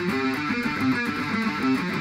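Electric guitar played through a Crate practice amp: a riff of quick, changing single notes.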